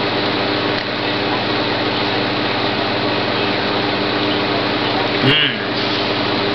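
Steady whirring drone of a running household fan-type appliance, a rush of air over a low, even hum. A brief voice sound breaks in about five seconds in.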